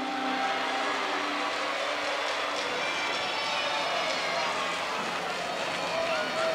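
Steady noise of a large crowd, many voices at once with no single voice standing out.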